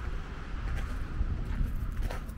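Wind rumbling unevenly on the camera microphone, with faint footsteps on dry earth as the camera is carried around the caravan.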